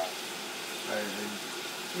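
Kitchen faucet running into a stainless steel saucepan of rice, the water pouring over the rim into the sink as the rice is rinsed of its starch. A faint voice murmurs briefly about a second in.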